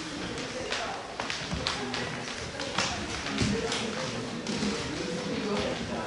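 Indistinct chatter of several people in a room, with frequent sharp taps and knocks scattered through it.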